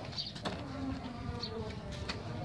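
An insect buzzing close by, with one sharp knock about half a second in.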